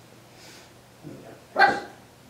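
A small dog, a Maltese, barks once, short and high, about one and a half seconds in, against a quiet room.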